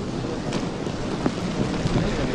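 Steady rain falling, an even hiss over a low rumble, with a few faint clicks.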